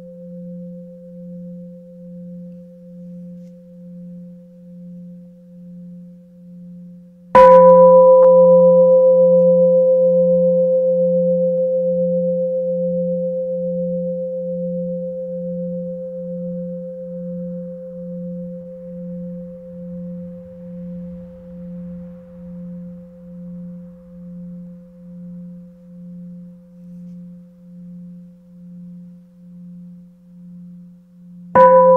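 A meditation bell struck once about seven seconds in, then ringing on with a slow fade and a steady wavering hum. The ring of the previous strike is still fading at the start. It is one of three sounds of the bell that mark the close of a session.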